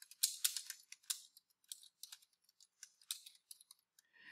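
Typing on a computer keyboard: an irregular run of quick, light key clicks, most tightly bunched in the first second.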